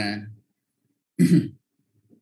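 A person clears their throat once, a short rough burst about a second in, just after trailing off mid-sentence.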